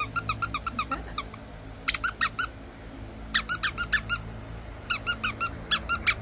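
The squeaker inside a green plush dog toy, squeezed in the hand over and over, giving four quick runs of high squeaks.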